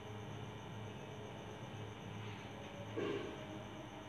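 Quiet room tone with a steady low hum, and one brief soft sound about three seconds in.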